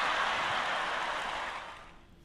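Theatre audience applauding after a stand-up comedy punchline, an even clapping that fades out near the end.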